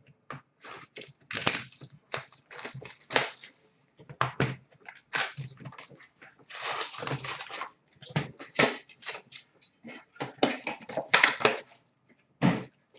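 A hockey card box and its packs being opened by hand: cardboard and pack wrappers torn and handled in a run of short, irregular rustling and ripping noises.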